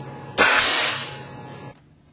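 Nail gun firing a 16-penny nail point-blank into safety glasses on a mannequin head: one sudden loud shot about half a second in, trailing off in a hiss that fades over about a second.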